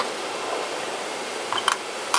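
Plasma cleaner chamber door being unlatched and swung open, giving a few light clicks about three-quarters of the way in, over a steady hiss of air-moving machinery.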